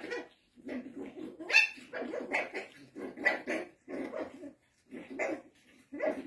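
Puppies barking during a rough play fight: a quick string of short, separate barks, each a fraction of a second long.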